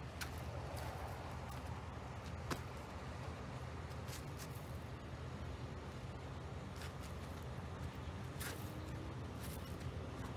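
Outboard motorboat passing close by, its engine a low, steady hum with a faint tone coming in near the end. A few sharp clicks sound over it.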